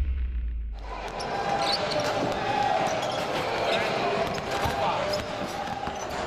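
Basketballs bouncing on the court in a large echoing hall, irregular thuds starting about a second in, with voices in the background.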